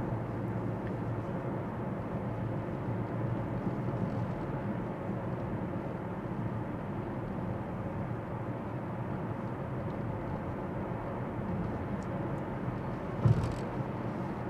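Steady road and engine noise inside a moving car's cabin.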